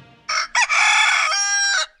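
A rooster crowing once: two short notes, then a long held note that shifts pitch partway through and stops just before the end.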